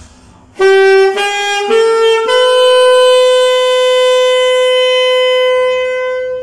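Alto saxophone playing four rising notes, written E, F, G, A, starting about half a second in: three short notes, then the top note held for about four seconds.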